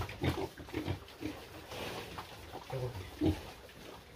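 Piglets grunting: a handful of short, separate grunts, the loudest near the end.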